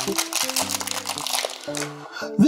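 Blind-box packaging crinkling as it is torn open by hand, over background music with held notes.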